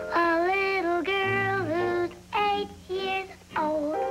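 A young girl singing a children's song in several phrases with held notes, over a light instrumental accompaniment.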